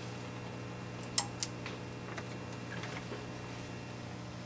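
Two sharp plastic clicks a little over a second in, with a few fainter ticks, as RJ45 cable plugs are pulled from and pushed into a network splitter's ports. A steady low hum runs underneath.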